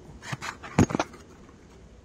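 Engine parts and their packaging being handled in a cardboard box: a few short knocks and rustles in the first second, the loudest a dull knock just before the second is up.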